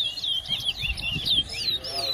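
Caged towa-towa (chestnut-bellied seed finch) singing a fast, unbroken run of short, sharp whistled notes.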